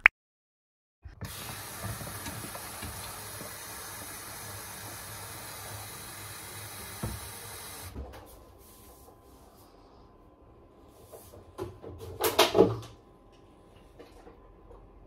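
A steady hiss for several seconds that stops suddenly, then a refrigerator door being opened with a few clicks, and a short burst of voice near the end.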